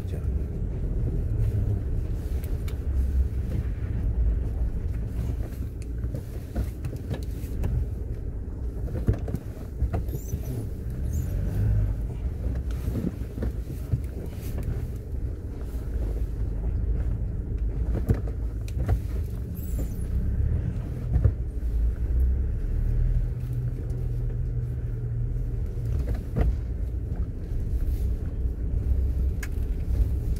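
Low steady rumble of a car's engine and tyres, heard from inside the cabin, as it moves slowly over an icy, gravelly road and turns around, with scattered short clicks and knocks from the tyres on the rough surface.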